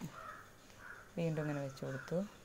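Crows cawing in the background, a few short hoarse calls, with a low voice sounding briefly from a little over a second in.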